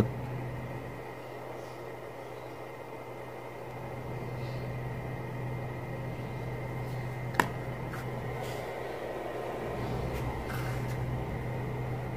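Steady low hum under room noise, with one sharp click about seven seconds in.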